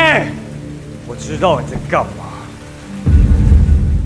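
Rain falling steadily under background music; about three seconds in, a loud, deep rumble of thunder breaks in.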